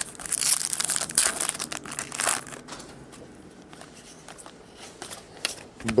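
Foil baseball card pack wrapper crinkling and tearing as the pack is opened by hand, busiest in the first two to three seconds, then settling into quieter handling.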